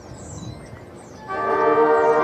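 Marching band during its show: after a hushed moment, the brass section comes in about a second in with a loud, sustained chord.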